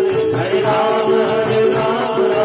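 Devotional kirtan: voices chanting a melodic refrain with a steady, quick beat of small hand cymbals and a drum.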